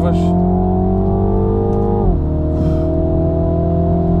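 2022 Mini John Cooper Works' 2.0-litre turbocharged four-cylinder engine heard from inside the cabin, rising in pitch under acceleration, then dropping sharply as it shifts up a gear about two seconds in, and pulling again. Much of the engine sound in the cabin is played through the car's audio speakers.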